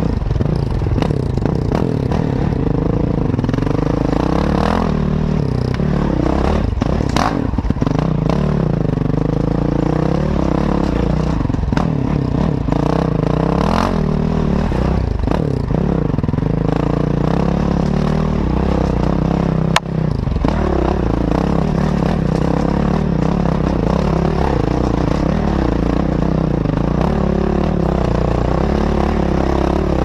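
Enduro dirt bike engine heard from the rider's helmet, revs rising and falling with the throttle over rough ground, with clattering and knocks from the bike over the terrain and one sharp knock about twenty seconds in.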